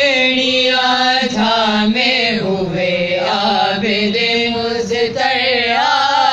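Women's voices chanting a noha, an Urdu Shia mourning lament, in long drawn-out notes that slide up and down in pitch without a break.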